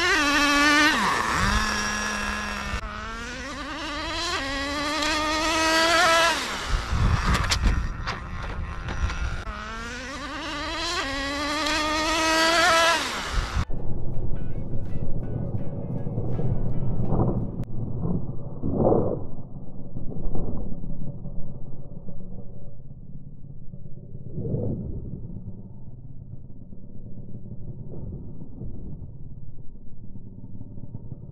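Small nitro engine of a Traxxas 4-Tec RC car screaming at full throttle. Its pitch climbs as the car accelerates, drops and climbs again several times, the way a two-speed gearbox shifts, and the owner thinks it may be running a bit rich. From about halfway the sound turns muffled and distant, with a few brief revs.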